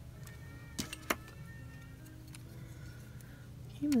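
Two sharp clicks of hard plastic crystal-puzzle pieces being handled, about a second in, over faint background music.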